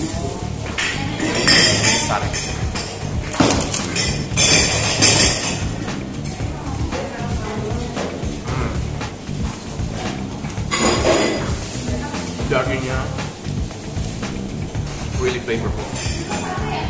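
Background music with a steady groove, over the crunching of a large fried crisp being bitten and chewed: several sharp crunches in the first five seconds, another near the middle.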